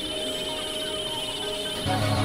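Experimental electronic synthesizer drone: a high, rapidly pulsing tone held over a steady mid-pitched tone. A low bass drone comes in near the end and the sound grows louder.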